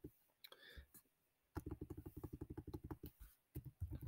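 Faint clicking from computer input as text is entered. A quick, even run of short clicks starts about a second and a half in, and a few separate clicks follow near the end.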